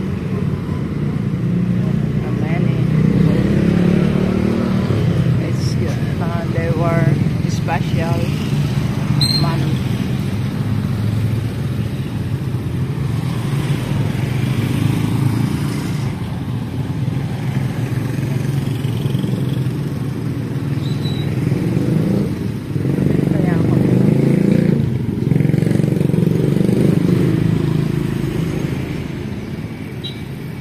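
Small motorcycle engines of tricycles running in street traffic, a steady hum that swells louder a couple of times as they pass.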